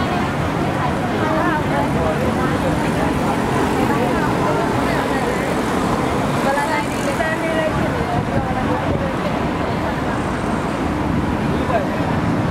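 Steady street ambience: road traffic running past, mixed with the chatter of many people's voices on a crowded pavement.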